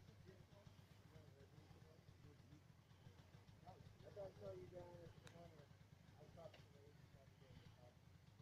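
Near silence, with faint distant voices talking about four seconds in and again briefly later.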